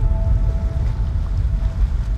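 Wind buffeting the microphone by open water, a loud, uneven low rumble. Faint held music notes fade out under it.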